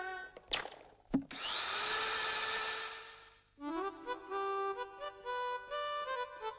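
An electric drill: a sharp click, then the motor whines up in pitch and runs with a hissy grind against the wall for about two seconds before stopping. A bright tune with held notes then starts.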